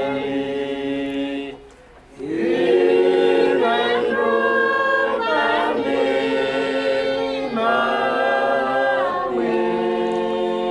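A congregation singing a hymn unaccompanied in several parts, in long held chords. The singing breaks off briefly for a breath just under two seconds in.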